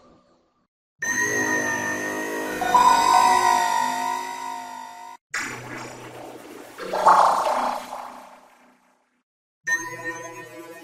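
Electronically altered versions of the Samsung Galaxy S3 startup sound. One chime of sustained, steady tones runs from about a second in to about five seconds. A second, wobbling version with sliding pitches follows straight after, then a short silence, and a third version begins just before the end.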